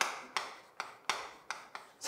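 Chalk tapping and scratching on a chalkboard as Korean characters are written: about five sharp taps at the starts of strokes, each dying away quickly.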